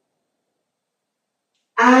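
Near silence: the sound track drops to nothing between spoken counts. A woman's voice begins counting near the end.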